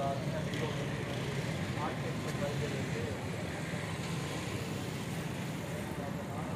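Background voices of a few people talking, faint and off-mic, over a steady low rumble.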